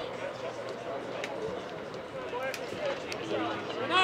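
Distant, faint voices of players and spectators calling and chatting across an outdoor sports field, with a few light knocks.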